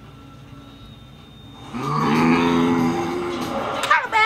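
A person's voice making one long, low, held sound of about two seconds, beginning about two seconds in.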